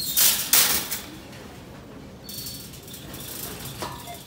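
Wire metal shopping cart being pulled out of a nested row of carts, its frame clattering loudly twice in the first second, followed by a softer steady rattle as it is pushed along.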